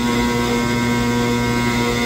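Steady mechanical hum with a rushing undertone from pneumatic loading: the silo's blower pushing powdered cement through the hose into the spreader truck's tank.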